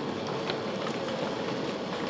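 Steady room noise of a large hall with an audience moving about: a low shuffling murmur with a few small clicks and knocks.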